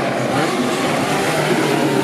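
Bugatti Type 35 racing car's straight-eight engine running at speed as the car drives past close by.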